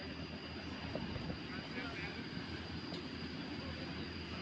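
Faint, distant shouts of youth football players over a steady low rumble of outdoor background noise.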